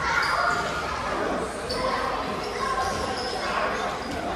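Busy sports hall during a group drill: many players running on the court floor, with sneakers squeaking in short high chirps and thuds on the floor. Indistinct voices echo around the large room.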